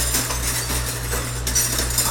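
Metal silverware clinking and rattling as it is handled by hand at a dish pit, over a steady low hum from kitchen equipment.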